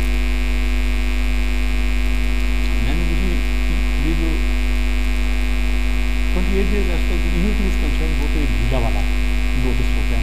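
Loud, steady electrical mains hum on the recording. Faint, muffled speech comes through the hum from about three seconds in.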